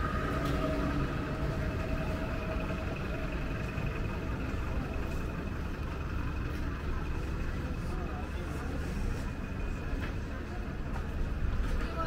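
Street ambience: a steady hum of vehicle engines and traffic, with people's voices in the background.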